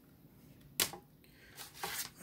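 A plastic CD jewel case clacking sharply once as it is set down, about a second in, then a few fainter clicks of cases being handled near the end.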